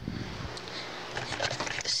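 Handling noise from a phone being picked up and moved while it records: irregular rustling and scraping with small knocks on the microphone.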